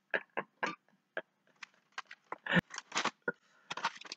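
A man's quiet, breathy laughter in short irregular bursts, with a single sharp knock about two and a half seconds in.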